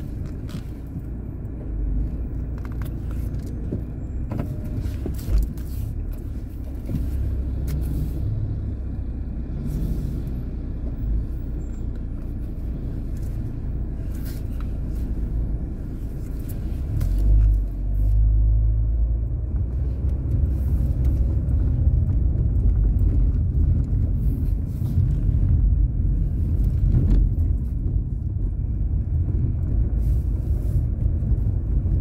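Car driving slowly on a rough street, heard from inside the cabin: a steady low engine and road rumble, which swells louder about seventeen seconds in. A few short knocks and clicks sound over it.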